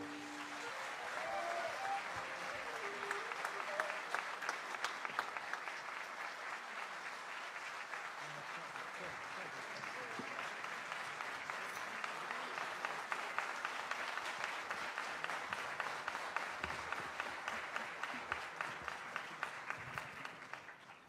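Audience applauding, a steady patter of many hands clapping, with a few faint voices in the first few seconds.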